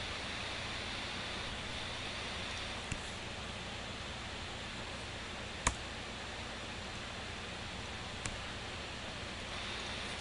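Steady hiss of room tone with three short, isolated clicks from a computer keyboard and mouse, the sharpest a little past halfway.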